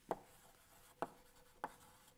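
Chalk writing on a blackboard, with three sharp taps of the chalk against the board.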